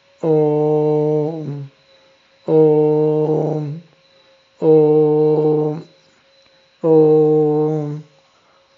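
A man chanting a bija (seed) mantra: four long syllables, each held on one steady low pitch for about a second and a half, with short pauses for breath between them.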